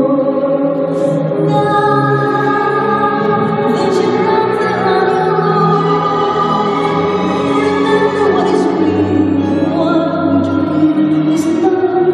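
Choral, operatic-style music with singing voices playing over the rink's sound system for a figure skating program. A few brief scrapes of skate blades on the ice cut through it.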